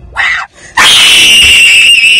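A short yelp, then a loud, high-pitched human scream that begins just under a second in and is held steady at one pitch.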